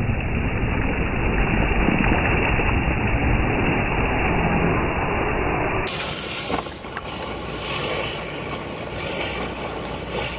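Traxxas TRX-4 radio-controlled crawler splashing through a puddle close by: a loud, dense churning of water spray and the electric drivetrain. About six seconds in the sound changes abruptly to a clearer, quieter take of the truck's motor whine and tyres working through water and gravel, with a few sharp clicks.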